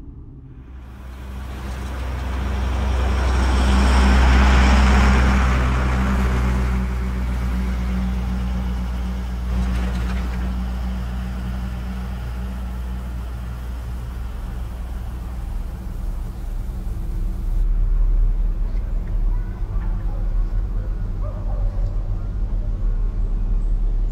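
An old bus passes close by: its engine hum and road noise swell to a peak about four seconds in, then it drives away with a steady low engine drone.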